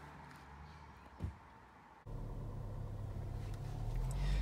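Quiet outdoor ambience with a single short thump about a second in. Then, after a sudden change, the steady low rumble of a BMW X2 18d being driven, heard from inside the cabin, growing slightly louder.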